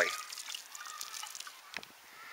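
Water shaken through the nail holes of a bottle lid, sprinkling and trickling onto the pebbly growing medium of a fabric grow bag, faint and dying away within the first second or two.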